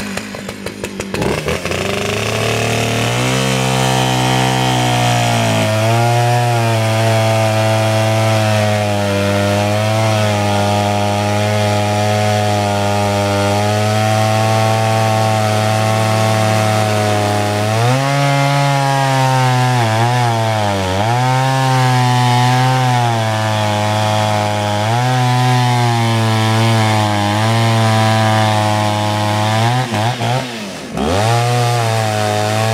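Stihl 041 two-stroke chainsaw revving up from idle, then running at full throttle through a log with a dull chain. Its pitch sags several times in the second half as the cut pulls the engine down.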